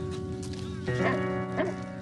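Sustained keyboard music under a dog barking a few short times from about half a second in.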